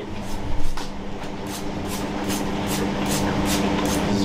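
Metal tongs clicking against wire deep-fryer baskets: a run of sharp, evenly spaced clicks, about two to three a second, through the second half, over a steady low kitchen hum.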